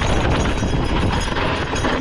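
Gravel bike rolling quickly over a rocky dirt trail: the tyres crunch and the bike rattles over the stones in a steady loud stream, with wind rumbling on the microphone.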